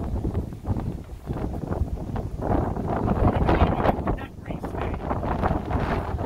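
Gusty wind buffeting the microphone, with a louder gust from about two and a half to four seconds in.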